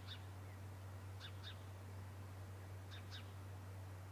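A bird calling outdoors: three short two-note calls, about a second and a half apart, over a steady low electrical hum.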